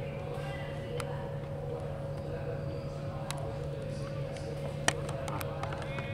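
Faint, distant voices of rugby players calling and shouting on the pitch over a steady low hum. A few sharp clicks cut through, the loudest just before five seconds in.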